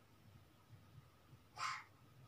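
Quiet room, then near the end one short, breathy, hoarse burst from a young girl's voice.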